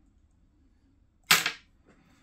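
A single loud, sharp click about a second and a half in, dying away quickly, with a much fainter click near the end.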